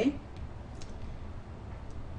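A few faint, scattered clicks and taps of a stylus on a tablet screen during handwriting, over low steady background noise.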